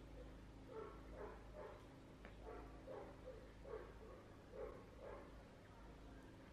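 A series of about nine faint, short vocal sounds, each about half a second long, coming at irregular intervals over a low background.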